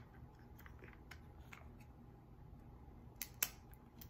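Faint crinkles and clicks of fingers working at the thin plastic wrapper sealed around a tiny Mini Brands miniature, with a couple of sharper clicks about three seconds in as the wrapper resists opening.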